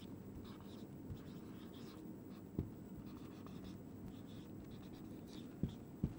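Faint scratching strokes of a marker pen writing on a whiteboard, with two light clicks, the second near the end.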